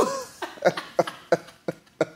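A man's breathy, wheezing laughter: a rapid run of short voiced gasps, several a second, fading as it goes.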